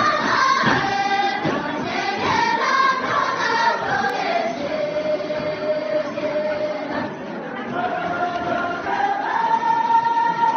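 A group of women singing a Tibetan gorshey circle-dance song together, unaccompanied, in long drawn-out melodic phrases with one note held steadily about midway.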